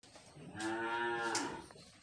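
Cattle mooing once, a single call about a second long starting about half a second in.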